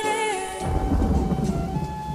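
Slowed, reverb-heavy song: a held female vocal note ends about half a second in, then a low rumble of thunder with rain takes over, under a faint sustained musical tone.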